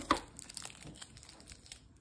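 Crinkling of Crunch bar wrappers being handled, a sharper crackle just after the start followed by a run of lighter crinkles.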